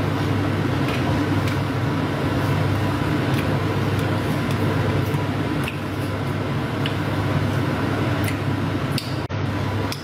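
Kitchen extractor fan running with a steady low hum, with scattered faint ticks and crackles over it.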